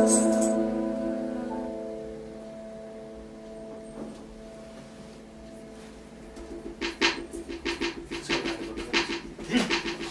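The last chord of a song on digital piano and acoustic guitar rings out and fades away over the first few seconds. From about seven seconds in there is laughter.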